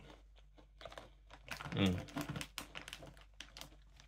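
Clear plastic snack bag crinkling in a run of short crackles as it is handled, with a brief 'mm' from a man about halfway through.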